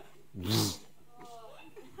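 A short, breathy vocal exclamation from a man about half a second in, followed by a fainter, higher voice rising in pitch a little later.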